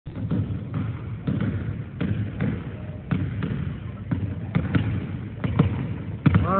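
A basketball dribbled on a hardwood gym floor: a series of sharp bounces, roughly two a second, slightly irregular.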